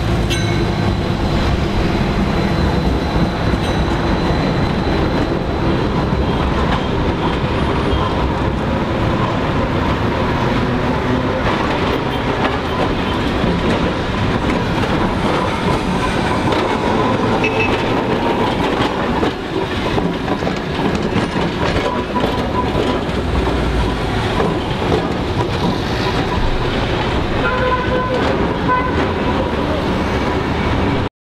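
Trams running on street track: steady rolling and rail noise from passing tramcars, including a modern yellow tram close by and the red four-axle heritage car 602 rebuilt from a 1925 Oerlikon series, with a steady whine in the first several seconds.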